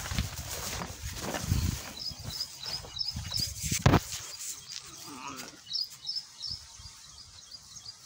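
A small bird chirping, short high chirps a few times a second from about two to six seconds in. Low thumps are heard in the first two seconds, and there is a sharp knock just before four seconds in.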